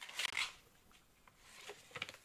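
A brief rustle of a paper instruction leaflet being moved, followed by faint handling noises near the end.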